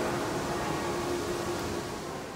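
Steady hiss of indoor room noise with a faint steady hum; no distinct event.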